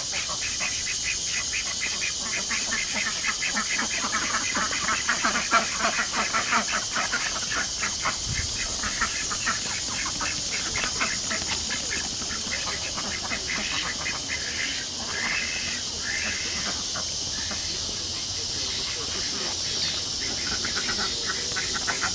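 Ducks softly calling and shuffling about, over a constant high-pitched hiss.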